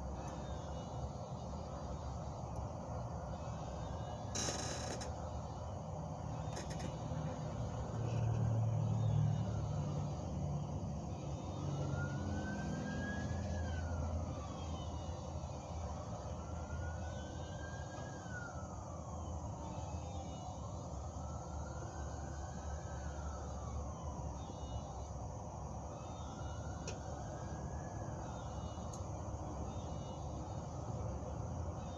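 Distant emergency-vehicle siren wailing, rising and falling slowly about every four to five seconds, over a steady low rumble. A sharp click comes about four seconds in.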